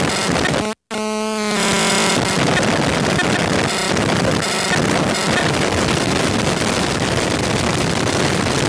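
A Eurorack modular synth patch, with a Mutable Instruments Sheep wavetable oscillator in a feedback loop through a Vert mixer with Switches, puts out a harsh, dense noise as its knobs are turned. Just under a second in it cuts out suddenly, comes back as a buzzy pitched tone that lasts well under a second, then breaks back into the noisy texture.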